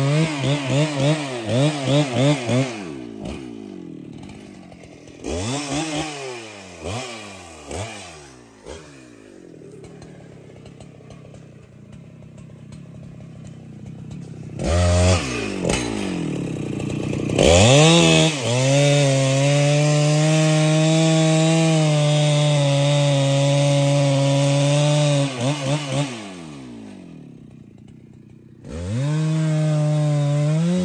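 Husqvarna 395 XP two-stroke chainsaw cutting into a trembesi trunk at full throttle, its note wavering under load. It drops to idle with a few short throttle blips, revs up again about halfway through and holds steady high revs for several seconds, idles briefly, and is back at full throttle near the end.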